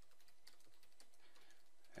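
Computer keyboard being typed on, faint and irregular keystrokes.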